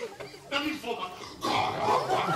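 A man's voice saying a word, then a strained, pained groan from about one and a half seconds in.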